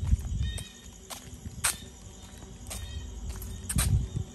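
Footsteps on a concrete path: a few sharp footfall slaps about a second apart, with low rumbling handling noise from a hand-held phone at the start and again near the end.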